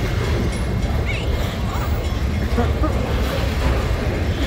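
Freight train of lumber-loaded flatcars rolling past close by: a steady low rumble of wheels on the rails.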